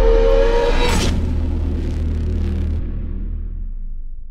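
Logo-intro sound effect: a deep rumble dying away slowly, with a short tone and a whoosh about a second in, fading out near the end.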